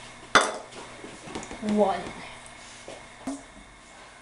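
Kitchenware clinking: one sharp, ringing clink of a dish or measuring cup knocked against a hard surface about a third of a second in, then a fainter knock a little past three seconds.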